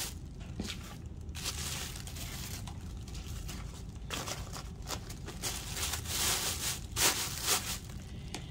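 Plastic bag and brown paper crinkling and rustling as they are handled and smoothed over a worm bin, with a few sharper crinkles about four seconds in and near the end.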